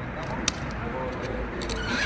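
Handling noise of a cardboard box being sealed with packing tape: a sharp click about half a second in, a few small taps, and a short rasp of tape near the end. Under it run a steady low street rumble and faint voices.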